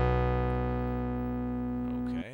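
A Reason Thor software synthesizer patch of three un-detuned sawtooth oscillators stacked an octave apart through a driven low-pass filter. It holds one sustained low note that fades slowly, the raw starting stack of a trance lead.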